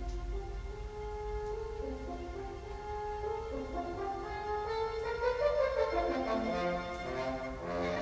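Brass instruments playing a slow melody in held notes, several parts together, the top line climbing over the first few seconds and a lower line stepping downward near the end.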